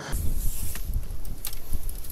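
Wind buffeting a camera microphone: a steady low rumble with hiss and a few light knocks.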